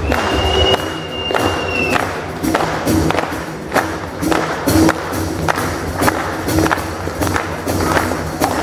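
Live drum solo on a rock kit with two bass drums: uneven strikes on toms, snare and cymbals over low bass drum hits, ringing in the hall. A steady high whistle sounds over the first two seconds.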